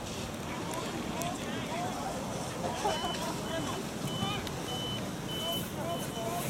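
Distant voices of soccer players and onlookers calling and chatting, over wind noise on the microphone. From about halfway, a high steady beep repeats about three times every two seconds.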